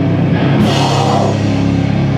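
Hardcore punk band playing loud and live, with distorted guitars, bass and drums, and a bright cymbal crash just after half a second in.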